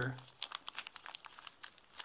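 Small clear plastic parts bag crinkling as it is handled, a quick irregular run of light crackles.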